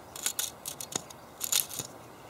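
Light, irregular metallic clicks and clinks of a chainsaw bar and its chain being handled, the chain links ticking against the bar's worn sprocket nose.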